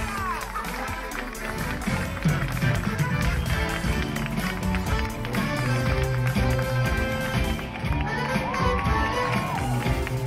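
Live band music from a stage musical, recorded from the audience seats, with a voice over the music.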